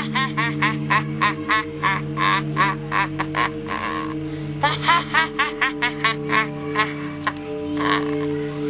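A boy laughing in a long run of quick, rhythmic 'ha' bursts, about four a second, pausing briefly about four seconds in, over a steady background music drone.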